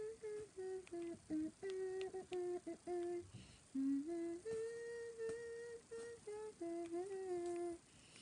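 A young woman humming a pop tune with her lips closed, in short, mostly level notes with brief breaks between them, pausing briefly a little past three seconds and then holding a longer, higher note.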